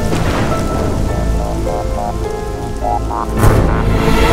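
Opening title music layered over a rain sound effect: a steady hiss of rain under held tones and short melodic notes. About three and a half seconds in, a loud swelling rumble like thunder.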